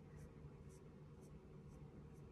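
Faint, short scratchy strokes of an eyebrow pen's tip drawn across the brow hairs, about two a second, over a low steady room hum.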